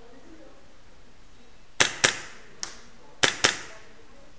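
Airsoft electric pistol firing five shots in sharp cracks, each with a short echo: a quick pair about two seconds in, a fainter single shot, then another quick pair a little after three seconds.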